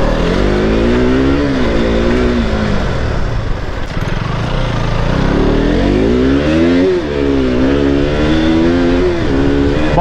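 KTM RC sport bike's single-cylinder engine under way, its revs climbing and falling several times as the rider accelerates and eases off, with a sudden drop in pitch about seven seconds in, typical of a gear change.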